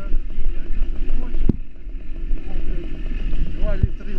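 Small motorcycle engine running as the bike rolls along, heard from on board with wind on the microphone. Two sharp knocks, about a second and a half in and near the end.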